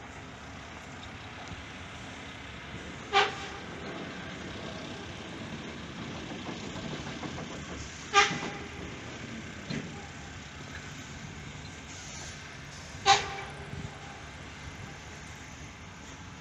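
Three short, sharp metallic clangs with a brief ringing tone, evenly spaced about five seconds apart, over steady construction-site noise.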